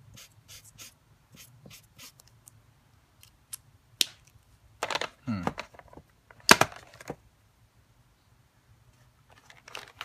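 Chisel-tip pigment marker scratching across paper in short strokes, several a second, the new tip dragging on the cheap paper. Then two sharp plastic clicks, the louder about six and a half seconds in.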